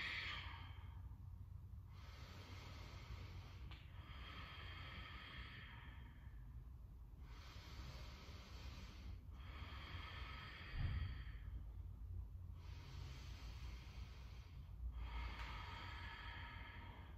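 A woman's faint, slow, even breaths, each a second or two long, repeating every two to three seconds over a low room hum.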